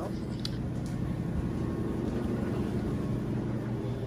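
Laundry machine running, a steady low hum.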